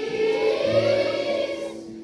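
A children's choir singing. A held phrase fades out near the end, leaving a short break before the next phrase begins.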